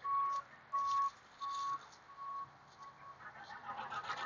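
Electronic warning beeper: a single steady high tone beeping five times, about 0.7 s apart, growing fainter and stopping about three seconds in.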